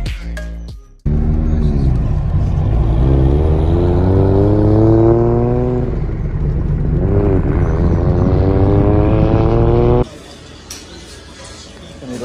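Toyota Supra (Mk4) inline-six engine accelerating hard: the pitch climbs through a gear, dips briefly at a shift about halfway, then climbs again. Music fades out in the first second, and the engine sound cuts off abruptly near the end into quieter room noise.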